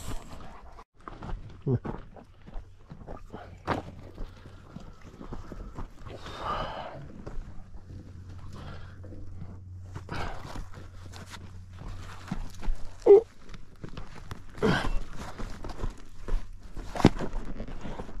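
Footsteps on rocky desert gravel, mixed with scattered knocks and rattles of saddle and pack gear on a saddled mule being handled.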